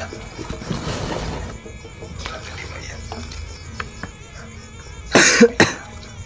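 A man coughs twice in quick succession a little after five seconds in, the loudest sound here. Before that, a soft rustle of cloth and rope being handled.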